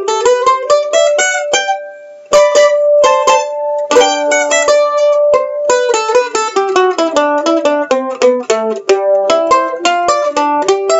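Weber Y2K Apple mandolin played with a pick: quickly picked notes and chords, with a rising run at the start. The playing pauses briefly about two seconds in, with the notes left ringing, then carries on.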